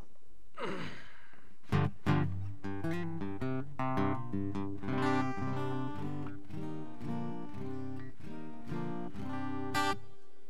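Solo steel-string acoustic guitar playing a song's instrumental introduction: a repeating pattern of chords begins about two seconds in and runs steadily on, with a louder stroke near the end.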